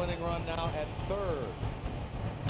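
A man's voice speaking faintly: baseball TV broadcast commentary playing back, quieter than the voice close to the microphone.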